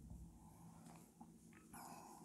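Near silence: room tone with a faint steady hum and a few faint ticks.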